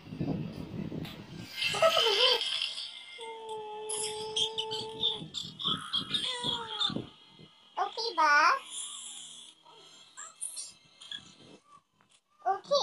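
A person's voice making wordless vocal sounds: a steady held note for about two seconds, then short wavering swoops up and down in pitch.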